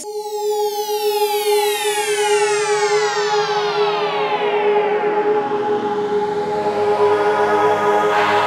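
Synthesized logo-sting sound effect: a many-layered sweep falling steadily in pitch over about six seconds, over a steady held tone, with more sustained synth notes joining near the end.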